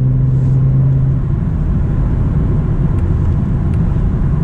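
Cabin noise of a BMW M340i xDrive cruising at highway speed: a steady low rumble of tyres and drivetrain, with a low drone that drops away about a second in.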